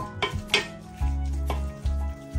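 A few knocks and scrapes of a pestle mashing sardines, garlic and chili together in a pot, over background music.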